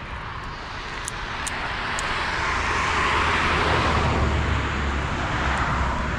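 A passing vehicle: a broad rushing noise with a low rumble that swells over about three seconds and then holds.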